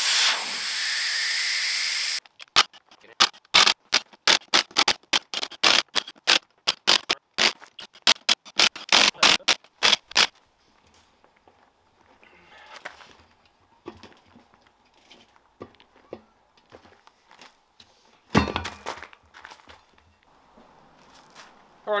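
Work on dismantling a tyre from a bolted beadlock wheel. A loud hiss of escaping air runs for about two seconds, then a quick, irregular run of sharp knocks goes on for about eight seconds. A single heavy thump comes near the end.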